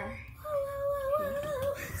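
A child's voice humming one long, fairly steady note, held for about a second and a half.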